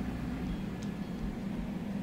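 Steady low machine hum with a faint hiss from a powered-on K40-type CO2 laser cutter setup and its water chiller circulating cooling water; the laser is not firing.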